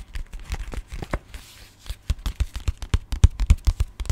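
Quick, irregular fingertip tapping and handling noises right at the microphone, each tap with a low thud, coming faster and louder in the second half.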